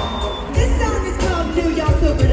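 Live pop band playing with singing, over a strong bass and drum hits, recorded from the audience in an arena.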